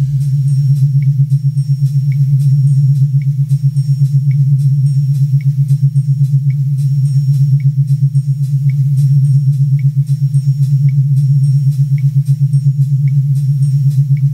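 Electronic synthesizer music with no drums: a loud, steady low synth drone pulsing rapidly, with a short high blip about once a second.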